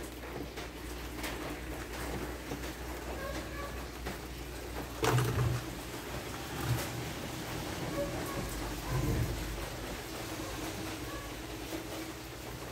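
Light rain falling steadily, heard as a soft even hiss, with a soft knock of the phone being handled about five seconds in.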